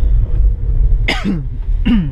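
Steady low rumble of the car's engine and road noise heard inside the cabin. A short cough-like burst from someone in the car comes about a second in, and a second one comes near the end.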